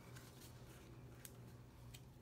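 Near silence: faint room hum with a few soft ticks and rustles of paper as the pages of a handmade paper flip book are turned.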